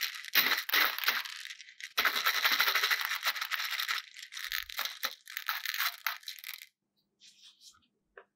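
Small hard round candies clicking and rattling against each other and the dish as a plastic doll is pushed and shifted among them, a dense run of clatter that stops near the end.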